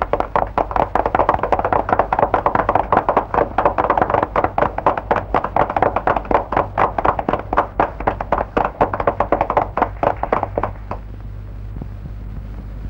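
Fast, even hand percussion, several strokes a second, in a film song's soundtrack. It stops abruptly about eleven seconds in, leaving a low soundtrack hum.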